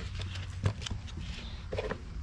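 Several light knocks and clicks as a foam air filter on its cage is unfastened and pulled out of a dirt bike's airbox.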